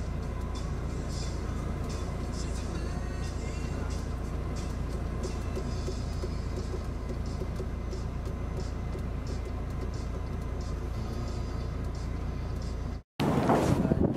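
Steady low engine and road rumble inside a moving taxi's cabin. Near the end it cuts off for an instant and gives way to louder, gusty wind on the microphone.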